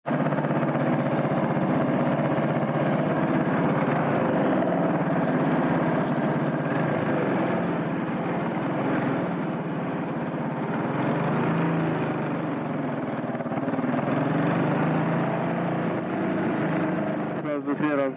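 Honda CB400SS's air-cooled single-cylinder engine running steadily at low revs.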